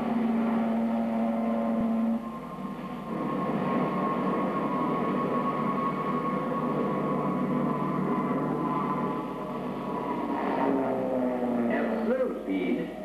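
Short Seamew's single Armstrong Siddeley Mamba turboprop engine running in flight, a steady drone with a high whine. A lower steady hum sounds for the first two seconds, and the sound eases off near the end.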